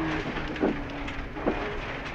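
In-cabin sound of a 2000 Subaru Impreza STi's turbocharged flat-four engine running at speed on a gravel rally stage, with its note dipping slightly then holding steady over constant road and gravel noise. Two short knocks come through, about a second apart.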